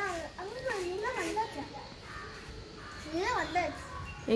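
A young girl's high voice calling out in short, sing-song phrases whose pitch rises and falls, with a quieter pause in the middle.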